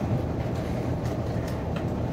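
Steady low rumble of room noise between speakers, with a few faint clicks.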